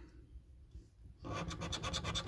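Scratch card being scratched, the coating rubbed off in rapid strokes that start a little past halfway.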